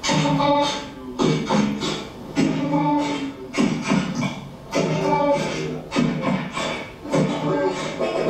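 Human beatboxing into a handheld microphone: a vocal beat with a sharp hit about every second and a quarter, mixed with pitched hummed sounds. It is played back from a workshop video through a lecture hall's speakers.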